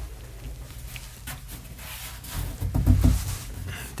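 Heavy steel cabinet of an antique tube-type device being tilted and shifted by hand, with faint knocks and rubbing. A short, low grunt of effort comes about three seconds in.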